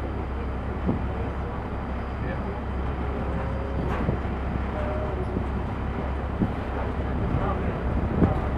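A boat's engine running steadily as a deep, even drone, with faint voices talking over it.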